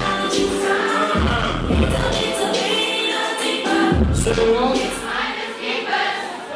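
Live concert music through a venue PA: a bass-heavy beat with deep hits under sung vocals, with many voices singing along.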